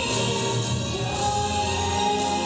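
A large church choir singing gospel music, holding long sustained notes.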